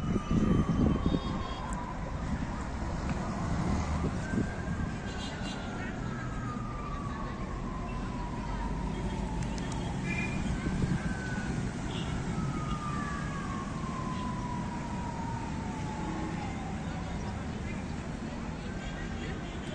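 Emergency-vehicle siren wailing in slow sweeps, each falling in pitch over several seconds before jumping back up, about three times, over a steady rumble of city traffic. The rumble is briefly louder right at the start.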